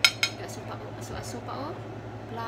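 A kitchen utensil clinks sharply twice against a cooking pot, about a quarter second apart, followed by a few lighter taps and clatter.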